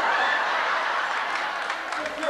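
Audience laughing and applauding together.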